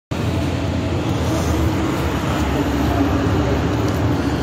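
Steady city street traffic noise, a low rumble of vehicles.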